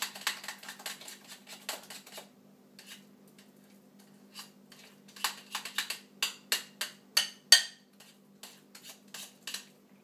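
A hand utensil beating Crisco shortening to fluff it in a glass bowl, clicking and scraping against the bowl in irregular quick bursts. The knocks thin out briefly, then come loudest about halfway through.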